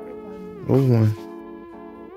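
Background music with steady synth tones that glide between pitches. About a second in comes a short, loud, voice-like cry that falls in pitch.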